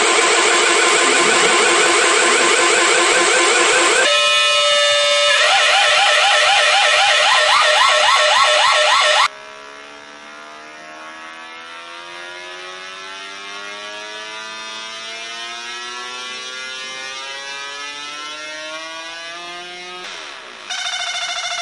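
Electronic oscillator tone. For about nine seconds it warbles loudly and rapidly in pitch, then it drops to a quieter tone with several overtones that glides slowly upward in pitch as a potentiometer is turned.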